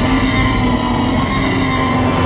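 One long, loud roar from a film Tyrannosaurus rex, a sound-designed creature roar.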